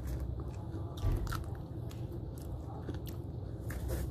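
Close-up eating sounds: biting and chewing roast chicken, with scattered small clicks and rustles as fingers pick food off a plastic sheet, and a dull bump about a second in. A steady low hum runs underneath.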